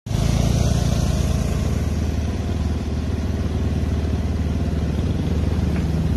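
Small motorcycle engine running steadily at riding speed, heard from a moving bike with road and wind noise.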